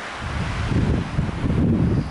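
Wind buffeting the camera's microphone: an irregular low rumble that sets in just after the start.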